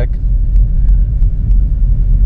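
Steady low rumble of a moving car heard inside its cabin: road and engine noise with no change in pace.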